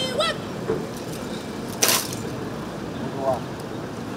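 A vehicle rolling slowly over a steady outdoor background, with scattered voices and one short, sharp knock about two seconds in.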